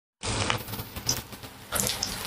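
Trevally fish steak frying in hot oil in a cast-iron pan, sizzling steadily with irregular crackles and pops from the oil and curry leaves; sharper pops come about half a second in, at one second, and near the end.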